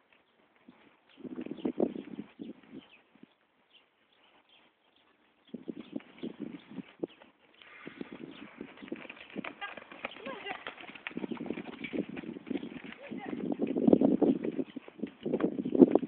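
Hoofbeats of a horse cantering on the dirt of a riding arena: irregular dull thuds that come and go, then grow louder over the last few seconds as the horse comes close.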